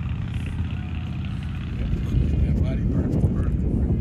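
Wind buffeting the microphone: a loud, low, irregular rumble that grows a little louder in the second half.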